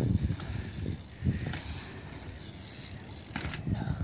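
A BMX bike coming over packed-dirt jumps: tyre and chain noise with some mechanical clicking from the bike, and a few short sharp knocks near the end as it hits the jump.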